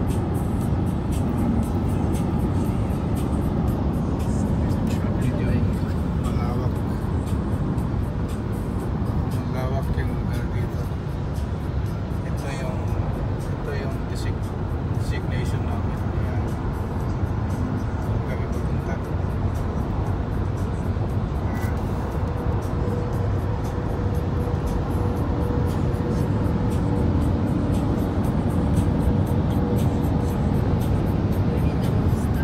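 Car cabin at highway speed, about 115 km/h: a steady low rumble of tyre, road and engine noise, with faint voices or music underneath.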